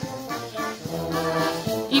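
A brass band playing dance music, the instruments holding long notes over a low bass line.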